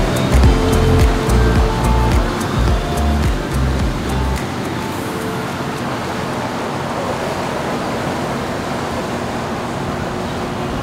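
Background music with a heavy bass beat that cuts off about four seconds in. After it, a steady rush of water and engine noise from a motor yacht cruising past with its wake.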